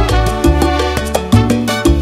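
Instrumental salsa music: a salsa band playing, with a bass line stepping from note to note under percussion and chords.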